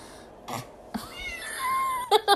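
A cat meowing: one drawn-out call starting about a second in, rising in pitch and then holding steady.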